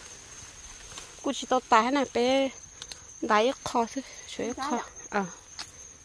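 Steady, high-pitched insect drone with no breaks, with a person talking over it from about a second in.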